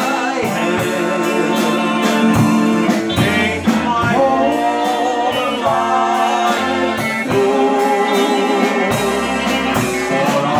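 Live band playing an instrumental passage: electric guitar lines over a drum kit keeping a steady beat with cymbals.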